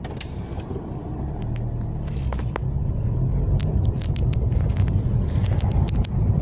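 Car interior noise while driving in city traffic: a steady low engine and road rumble that grows gradually louder, with a few faint light clicks.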